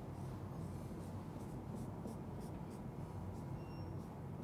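Marker pen on a whiteboard, drawn in a quick series of short faint strokes as hatch lines are filled in.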